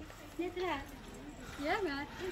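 A person's voice: two short utterances, each gliding up and down in pitch, about a second apart.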